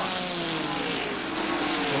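Several ARCA stock car engines running flat out together in a pack at superspeedway speed, a blended drone of several engine notes whose pitches slide slowly down as the cars go past.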